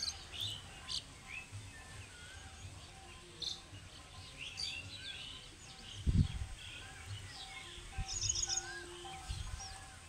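Several birds chirping and whistling with short, quick calls throughout. Low thuds come about six seconds in, at eight seconds and near the end, and the one at six seconds is the loudest sound.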